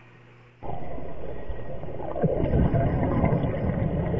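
Muffled underwater noise picked up by the diver's camera, with gurgling and a few falling glides in pitch; it cuts in sharply after about half a second of near silence.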